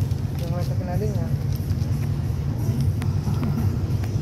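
A steady low rumble with faint voices talking over it.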